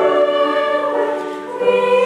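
Girls' and women's choir singing sustained chords; the sound eases off briefly about a second and a half in, then the next chord comes in.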